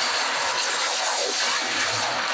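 Cartoon action sound effect from the episode's soundtrack: a loud, steady rushing roar of an energy blast.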